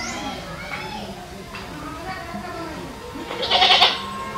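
A loud, wavering bleat near the end, over a background of voices.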